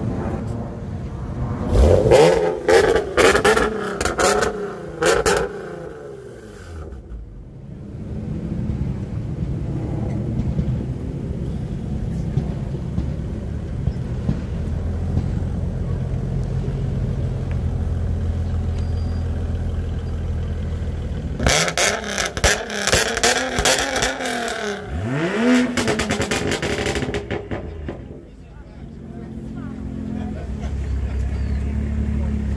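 Nissan 370Z's 3.7-litre V6 revved in two rounds of sharp blips, a couple of seconds in and again after about twenty seconds, one rev climbing quickly near the end. A steady low idle runs between the rounds.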